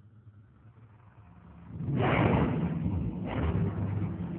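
A faint low hum, then about two seconds in a sudden loud rushing rumble, a horror-trailer sound effect, that surges again about a second later.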